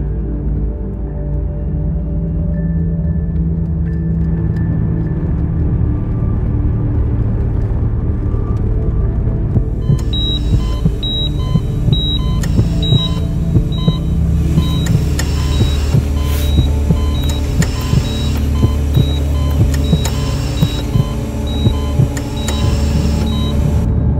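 Low, sustained film-score drone, joined about ten seconds in by the regular beeping of a hospital patient monitor, a little under one beep a second. A soft pulse keeps time with the beeps from about fourteen seconds on.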